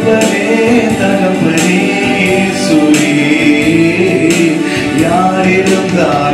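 A man singing a Tamil Christian worship song into a microphone, holding long, sliding notes, with musical accompaniment and occasional light percussive strikes.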